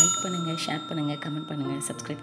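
Bell-like ding sound effect of a subscribe-and-notification-bell animation. It is struck at the very start and rings on with several clear tones, slowly fading away.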